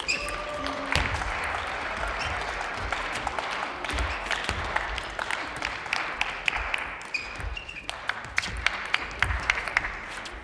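Table tennis rally: the ball clicking sharply off bats and table in quick succession, with short shoe squeaks on the court floor, over a steady wash of crowd noise in a hall.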